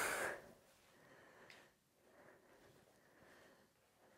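A woman breathing out sharply once, briefly, during an exercise, then only faint room sound.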